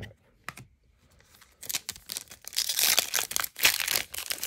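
Foil wrapper of a trading card pack crinkling as it is handled and torn open, starting about a second and a half in after a near-quiet start with a couple of small clicks.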